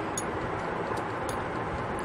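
Steady background hiss with a few faint, irregular light clicks as small metal sewing-machine shuttle-race parts are handled.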